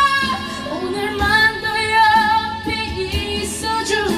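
A woman singing a Korean ballad into a karaoke microphone over the song's backing track, holding long notes with a wavering vibrato.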